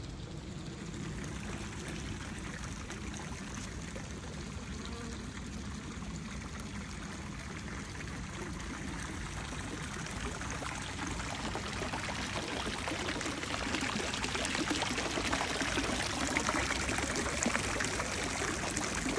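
Fountain water splashing and trickling into a stone basin, a steady rush that grows louder over the last few seconds.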